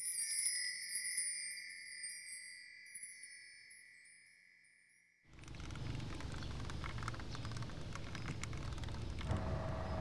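A shimmering chime sound effect: a few high ringing tones struck together, fading away over about five seconds. It cuts off abruptly into steady outdoor street noise with a low rumble.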